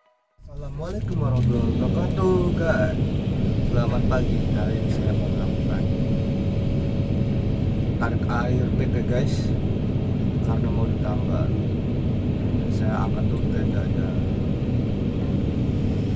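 Steady low rumble of a heavy machine's diesel engine running, starting about half a second in, with men's voices calling out briefly now and then.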